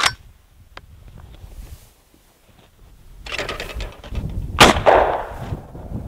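Winchester SX4 semi-automatic shotgun: a sharp metallic click right at the start as the gun is handled, then, after a second of rustling noise, a loud shot about four and a half seconds in whose echo dies away over most of a second.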